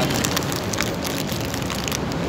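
Plastic snack bag crinkling as hands open and handle it, a rapid scatter of small crackles, over a steady hum of street traffic.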